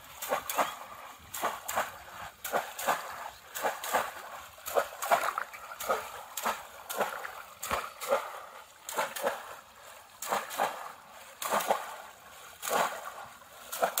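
Conical woven-bamboo fish traps being plunged again and again into shallow water: a run of short, irregular splashes, about two a second, as two traps are worked at once.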